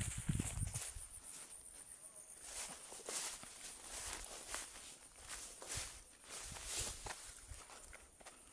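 Footsteps on rough ground, irregular and unhurried, with a few heavy thumps in the first second. Insects chirp steadily in a high pulsing band behind them.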